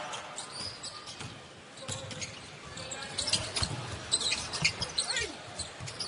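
Basketball being dribbled on a hardwood arena court during live play, with scattered thuds and the steady murmur of the arena crowd.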